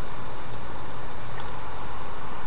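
Steady hiss with a faint low hum from a web-conference audio line while the presenter's voice has dropped out.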